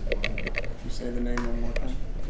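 A few light sharp clicks of a hook being handled and set in the jaws of a Renzetti fly-tying vise, then about a second in a short, steady hum from a person's voice.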